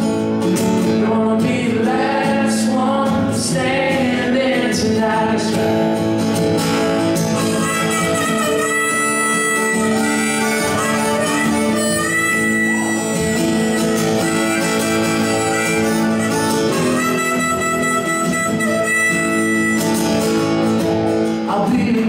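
Acoustic guitar strummed steadily under a harmonica playing long held notes.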